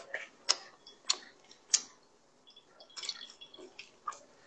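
Close-miked chewing of soft bread, with wet mouth clicks about every half second. Near the end comes a short crackle of soft pull-apart bread being torn apart.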